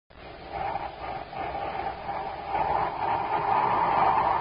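A rushing sound effect from a 1950s radio drama, a band of noise that swells steadily louder.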